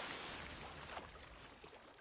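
A rushing noise from the anime's soundtrack, even across high and low pitches, fading away gradually over the two seconds.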